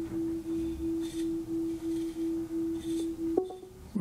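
iPad Pro's Face ID enrolment tone: a single low steady tone that pulses about three times a second while the head-movement scan runs. It stops with a short click about three and a half seconds in, as the first scan completes.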